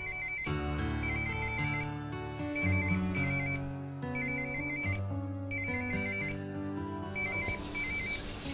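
A mobile phone ringing: a rapid electronic warbling trill in short bursts about once a second, over background film music with sustained notes.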